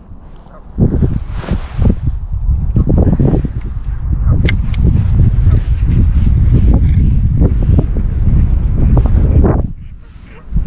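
Wind buffeting the microphone, a loud, heavy low rumble that sets in about a second in and drops away just before the end.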